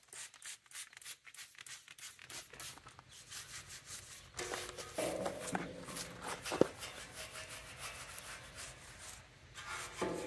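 A few quick squirts from a hand spray bottle, then a stiff-bristled plastic scrub brush scrubbing back and forth on bare sandblasted steel, working a wet degreaser cleaner into the frame. The scrubbing strokes come thicker and fuller from about halfway in.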